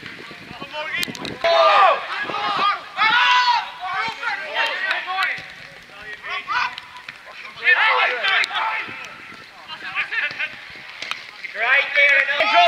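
Men shouting short calls to one another across a football pitch, in several bursts a few seconds apart.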